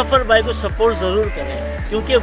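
Background music with a deep, thudding bass beat about twice a second and a voice over it.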